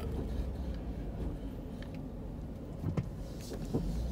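Low, steady rumble of a car's engine and tyres heard from inside the cabin as it rolls slowly forward, with one faint click about three seconds in.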